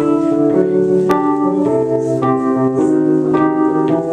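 Electric keyboard played solo in a piano voice: sustained chords with new notes struck about every half second. There is a single sharp click about a second in.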